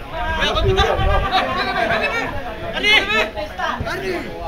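Several voices talking and calling out at once, overlapping chatter with no single clear speaker.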